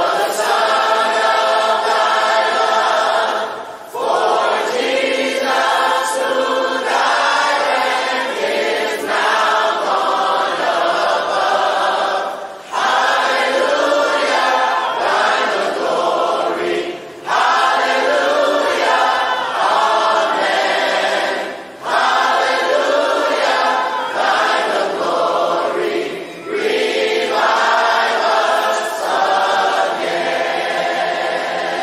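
A church choir singing in long held phrases of a few seconds each, with short breaks between them.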